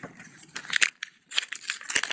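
Paper envelopes and mail crackling and rustling as they are handled and opened, in irregular bursts with a brief lull about a second in.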